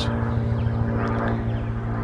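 Steady hum of an idling engine, with a fast, even low pulse.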